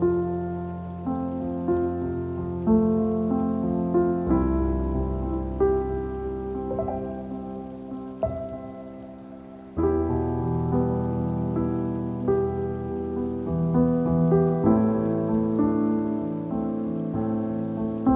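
Soft solo piano music playing slow chords and melody, over a steady rain ambience. The piano fades through a sustained chord, then a new, louder chord enters about ten seconds in.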